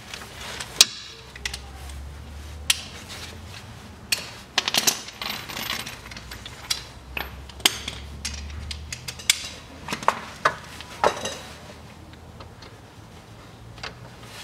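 Steel hand tools clinking and knocking: a socket wrench and long extension fitted to, worked on and taken off the accessory drive-belt tensioner. There are a dozen or so sharp, scattered clinks, the loudest about a second in, over a low hum.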